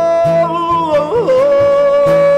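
A man's voice holding long high sung notes over a strummed steel-string acoustic guitar. A little over a second in, the voice flips briefly and settles on a lower held note while the strumming keeps an even rhythm.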